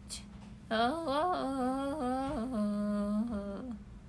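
A woman humming a short tune for about three seconds, the pitch stepping up and down and settling on a long held low note near the end.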